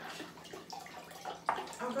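White wine pouring from a bottle into a glass pitcher, a steady splashing trickle of liquid as the pitcher fills.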